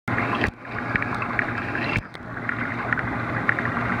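Aquarium water circulating near the surface: steady bubbling and crackling over a low pump hum, dipping briefly twice.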